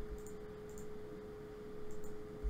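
A faint, steady hum on a single held tone over low room noise.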